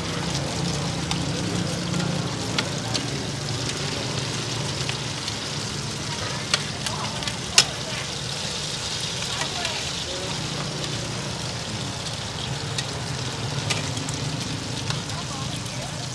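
Cubes of taro flour cake and egg sizzling steadily in oil on a large flat pan. Metal spatulas click and scrape against the pan now and then, the sharpest click about halfway through.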